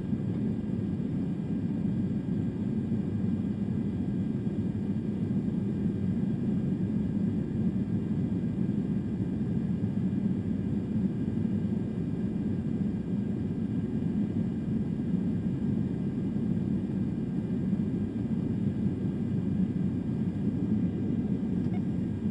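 Steady, unchanging low rumble of a refuelling tanker aircraft in flight: engine and airflow noise heard inside the boom operator's pod.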